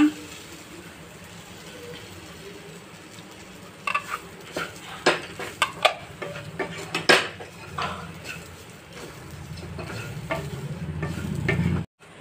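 Wooden spatula scraping and knocking against a nonstick kadai as masala powder is stirred into frying onions and green chillies, with a faint sizzle. The knocks come mostly between about four and eight seconds in, and a low rumble builds near the end.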